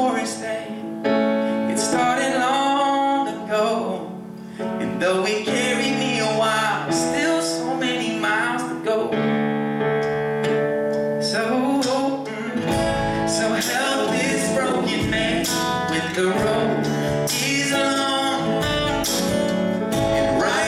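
Live acoustic band playing a song: a male lead vocal sung into a handheld microphone over acoustic guitar and keyboard. Low drum thumps come in past the middle.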